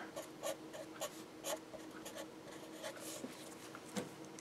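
Felt-tip marker writing on paper in a series of short, faint strokes.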